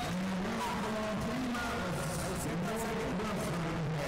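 Hubbub of a large tournament hall: many overlapping voices of spectators and coaches, steady throughout.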